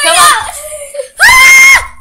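Young girls screaming in play: a short squealing voice at the start, then one long, high-pitched scream about a second in.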